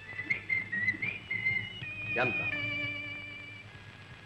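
A person whistling a short wavering tune of stepping high notes, ending on a long held note that fades out. A brief vocal sound cuts in about halfway through.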